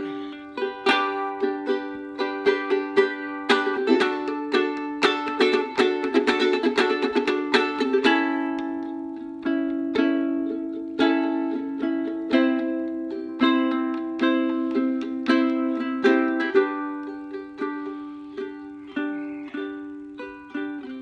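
Ukulele strummed with the thumb: a run of quick chord strokes for the first several seconds, then slower, more spaced strokes with changing chords.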